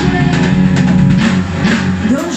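Live rock band playing, with the drum kit and guitar to the fore.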